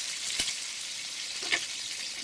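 Pieces of pork sizzling as they fry in a kazan on maximum heat: a steady hiss, with two soft knocks about half a second in and again near the end.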